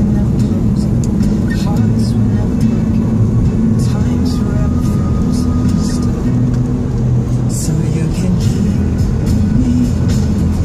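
A pop song with a singing voice playing on a car stereo, heard inside the moving car over its steady road hum.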